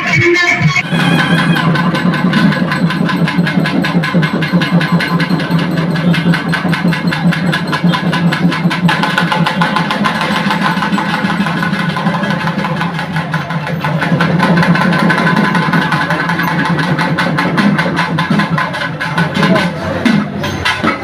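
Loud, fast, continuous drumming of a festival percussion band, mixed with the noise of a large crowd.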